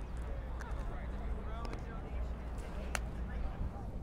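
Busy city-park ambience: a steady low traffic rumble under faint background chatter from people nearby, with a sharp click about three seconds in.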